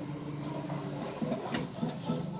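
Epson L3210 flatbed scanner's carriage motor running during a scan, a steady low hum with a few light clicks in the second half.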